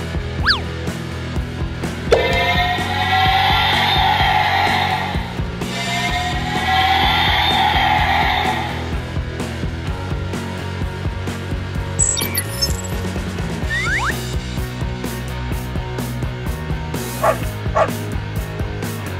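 Background music with a steady beat. From about two seconds in, two long, loud, wavering electronic sound effects of about three seconds each rise over it. Short whistle-like pitch glides follow later.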